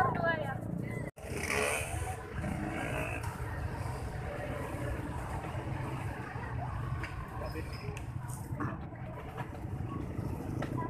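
Busy street-market background: indistinct voices over a steady hum of traffic. The sound cuts out abruptly for a moment just after a second in.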